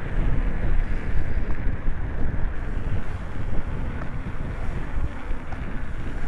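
Wind buffeting the microphone of a camera riding on a moving bicycle: a loud, rough, steady rush with its weight low down, rising and falling unevenly.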